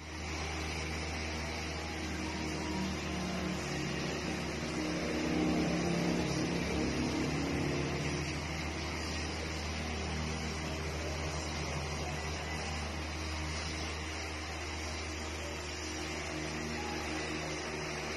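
A steady low mechanical hum with a fainter hiss above it, swelling slightly about five seconds in.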